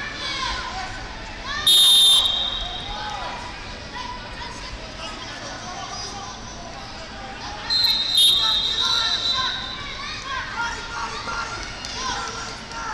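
Referee's whistle blown twice, about six seconds apart: one short blast stops the wrestling and a second blast restarts the bout from neutral. Voices chatter in the hall throughout.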